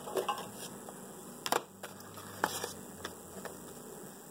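Quiet handling sounds: a few light clicks and taps of a plastic clamshell package being picked up, the sharpest about a second and a half in and another about a second later.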